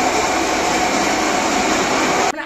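Electric marble floor polishing machine running steadily, its belt-driven grinding head scrubbing across a wet marble floor; a loud, even machine noise without breaks.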